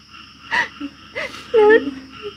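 A woman sobbing: a sharp gasping breath about half a second in, then short, pitched whimpering cries.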